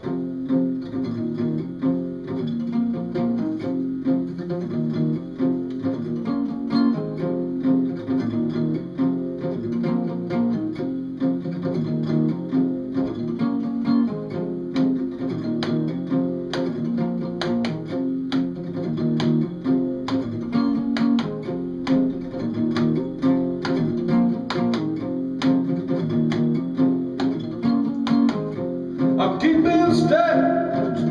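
Guitar strummed in a steady rhythm, the instrumental opening of a song just after the count-in. A voice starts singing right near the end.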